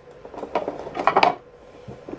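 A few sharp clicks and knocks of the plastic battery cover being pressed back into place and locked on the back of a JBL EON ONE Compact portable PA speaker, all within the first second and a half.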